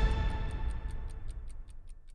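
Title sting for a TV news programme: held synthesised music tones fade out under a fast, clock-like ticking of about five ticks a second.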